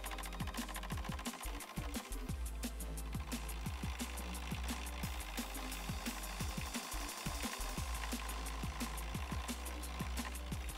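Background music with a steady beat, over a rapid, continuous clattering from a metal lathe taking heavy interrupted cuts, the tool striking the gaps in the work and making the machine vibrate.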